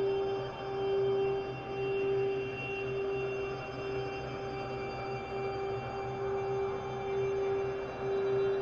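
Slow ambient electronic music: a steady, pure sine-like tone that swells and fades about once a second, with fainter sustained high tones above it.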